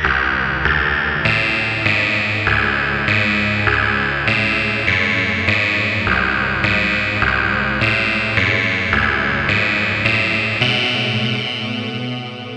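Yamaha FB-01 FM synthesizer module playing its 'HUMAN+' preset voice: a run of bright notes with many overtones, a new one about every 0.6 s. The last note is held and fades away near the end.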